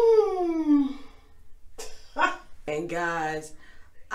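A woman's wordless vocal sounds: a long cry that falls steadily in pitch over the first second, then a short voiced sound and a held low hum near the end.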